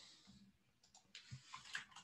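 A few faint clicks of computer keys over otherwise near-silent room tone.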